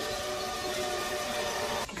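A sustained, steady chord of several held tones, a drone-like music cue from the TV episode's soundtrack, ending with a short click just before a man's brief 'okay'.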